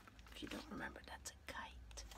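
Soft whispering voice in a pause between spoken words, faint and broken into short fragments, over a faint steady low hum.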